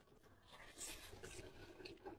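Faint close-miked eating sounds: chewing a mouthful of braised pork and handling the food. A soft scratchy rustle with a few small clicks, starting about half a second in.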